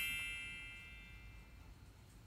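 A bell-like ding that rang out just before, fading away over about a second and a half.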